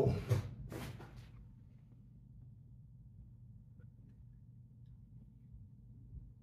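Quiet room tone with a faint low hum, after a short burst of noise just under a second in.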